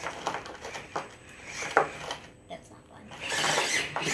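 Barrage RC rock crawler working over loose rocks on a plywood board: a few sharp clicks and clacks of tyres and chassis on stone, then a louder stretch of scraping and rattling near the end as it climbs a rock.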